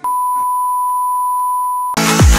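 Colour-bar test-pattern tone: a single steady, high-pitched beep held for nearly two seconds, cut off abruptly just before the end.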